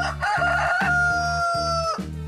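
A rooster crowing once, a cock-a-doodle-doo that ends in a long held note sagging slightly in pitch before it stops, over a steady background music beat.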